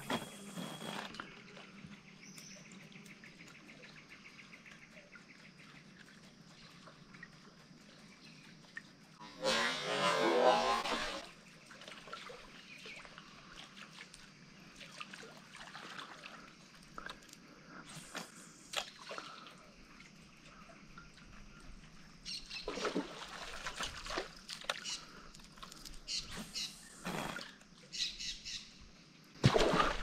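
Quiet open-air ambience over water with faint bird calls, broken about ten seconds in by a loud rushing noise lasting about two seconds, with a few short clicks and knocks later on.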